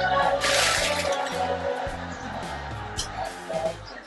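Background music with a steady bass line that grows quieter toward the end, with a short burst of plastic crinkling about half a second in and a few light clicks near the end.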